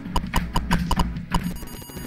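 Typing on an Atari 8-bit computer keyboard: a quick run of about nine key clicks in the first second and a half as a command is entered, then the clicks stop.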